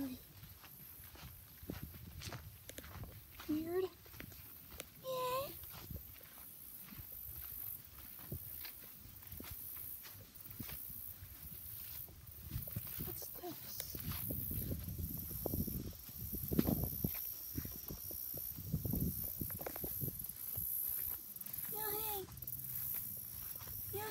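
Footsteps through grass with rustle and handling noise on the microphone, louder in the second half, and a few short, sliding high-pitched vocal sounds spread through it.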